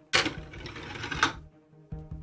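Plastic rattle of a toy figure spinning down a spiral fireman's pole on a toy fire station, lasting about a second and ending in a click, over background music.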